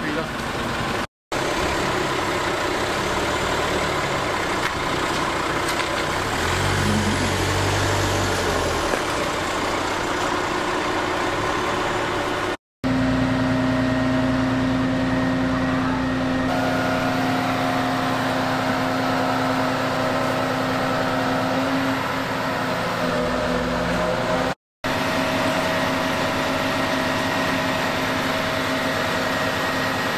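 Diesel engine of a truck-mounted mobile crane running steadily, broken into three stretches by sudden short silences at about one, twelve and a half and twenty-four and a half seconds. The engine pitch rises and falls about six to nine seconds in, and a steady hum runs through the middle stretch while the crane holds a site hut in the air.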